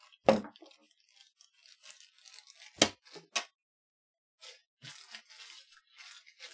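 Small hardware and tools being handled on a wooden workbench: three sharp clicks, one right after the start and two close together about three seconds in, with light rustling and scraping between them.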